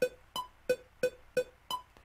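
Cubase metronome click playing on its own at a steady tempo of about 178 BPM, roughly three short pitched clicks a second. Every fourth click is higher in pitch, marking the downbeat of each bar, about a third of a second in and again well past the middle.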